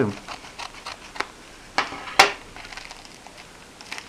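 Small scissors snipping through the end of a thin plastic mailing packet: a few light snips, the sharpest about two seconds in.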